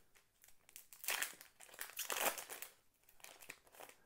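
Plastic wrapper of a football trading-card pack crinkling as the cards are pulled out of the opened pack, with two louder rustles about a second and two seconds in and small clicks of the cards between them.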